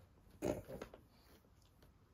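A quiet room: one short spoken word about half a second in, then a few faint small clicks.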